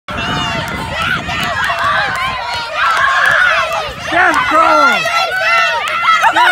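A group of girls shouting and cheering at once, many high-pitched voices overlapping, with one louder shouting voice standing out from about four seconds in.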